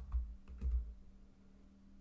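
Keys of a Casio fx-9750GIII graphing calculator being pressed twice, giving soft clicks with dull thuds, the 6 and 0 of an entry.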